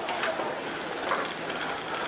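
Steady town-street background noise heard while walking: an even hiss with a few faint, brief knocks.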